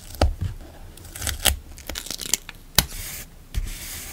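Craft knife cutting washi tape on a paper journal page, then fingers rubbing the tape down: short scratchy rasps, several sharp ticks and soft bumps of the hand on the page.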